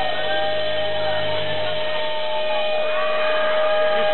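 Live band holding one steady sustained note between songs, with voices from the crowd rising and falling over it.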